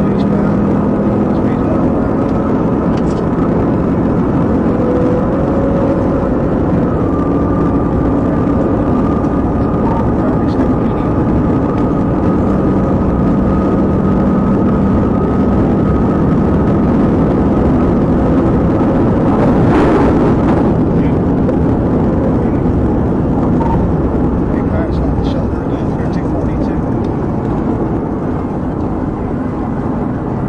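Loud, steady engine, tyre and wind noise inside a patrol car driving at well over 100 mph. There is a brief rush about two-thirds of the way through, and the noise eases slightly near the end as the car slows.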